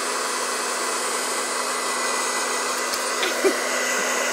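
Handheld hair dryer blowing steadily, with a constant low hum under the rush of air. A West Highland white terrier gives one short yip near the end.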